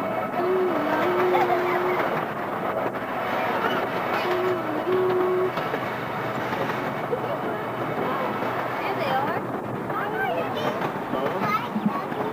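Miniature park train riding along its track, a steady rumble and rattle throughout. A held tone that dips briefly in pitch sounds twice in the first half.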